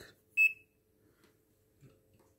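A handheld digital multimeter gives one short, high beep as its RANGE button is pressed.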